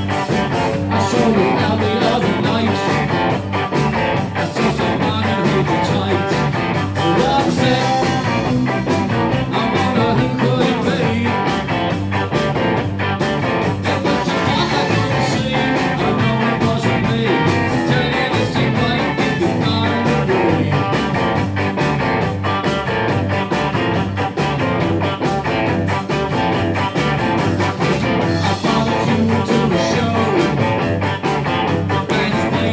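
A live rock and rhythm-and-blues trio of electric guitar, bass guitar and drums playing a driving, steady groove.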